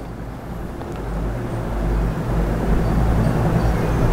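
Low, steady, engine-like rumble that grows gradually louder.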